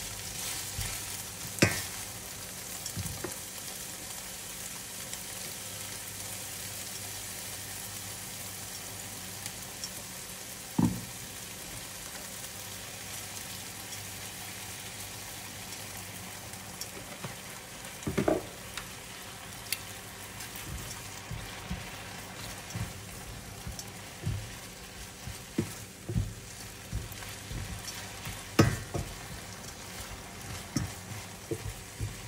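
Strips of meat sizzling in oil in a nonstick frying pan: a steady frying hiss, with metal tongs now and then knocking against the pan as the meat is stirred and turned.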